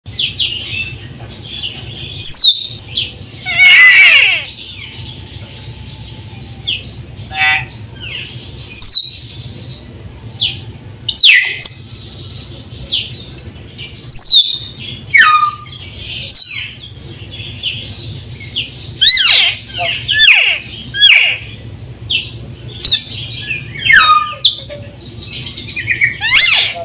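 Caged white-necked myna (raja perling) calling: sharp whistles sweeping steeply down in pitch, mixed with harsher chattering calls, every second or two, the loudest and harshest about four seconds in. A steady low hum runs underneath.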